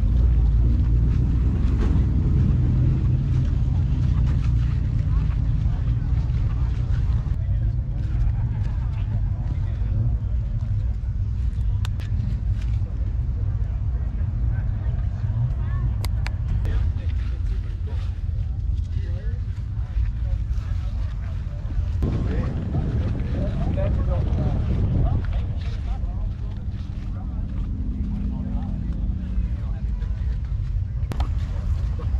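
Steady low rumble of outdoor ambience, with faint distant voices that come up for a few seconds past the middle, and a few light clicks.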